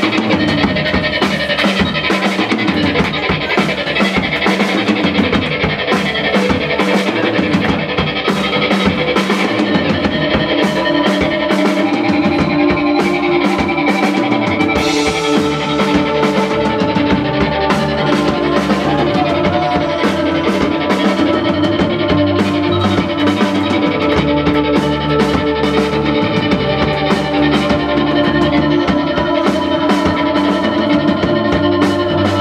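Live rock band playing an instrumental passage: drum kit with frequent cymbal hits, electric bass and electric guitar.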